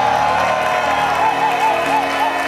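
Game-show music sting: held chords with a quick repeated wavering figure on top from about a second in, over studio audience clapping and cheering.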